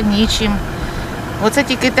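A woman speaking, pausing for about a second in the middle, over a steady low rumble.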